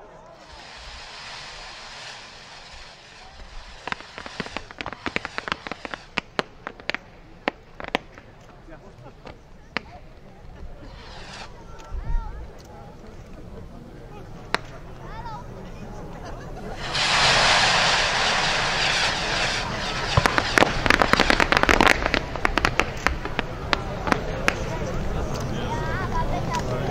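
A mass launch of 600 small Blättertanz fireworks rockets fired all at once. Launch hisses run throughout, with many sharp pops from the bursts. About 17 s in, a loud surge of hissing comes as the bulk of the rockets take off, followed by a dense run of crackling pops.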